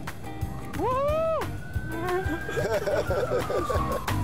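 A man's loud whoop of "woo!" about a second in, then laughter, over background music with a steady beat.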